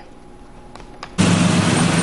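A quiet pause, then about a second in, street sound cuts in suddenly: a pickup truck driving past, with a steady engine hum under loud tyre and road noise.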